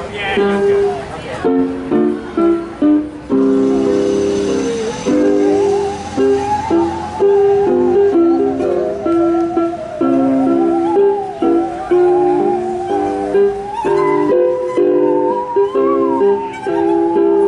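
Musical saw bowed to play a melody, its pitch sliding between notes with a wide vibrato, over choppy rhythmic chords from a plucked string instrument.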